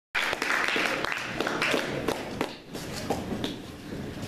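Audience applauding in a club, with some voices among the clapping. The clapping dies down after about two and a half seconds.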